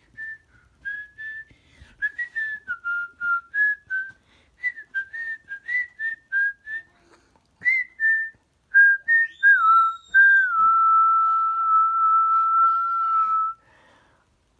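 A person whistling a tune: a run of short notes at changing pitches, ending on one long held note of about three seconds.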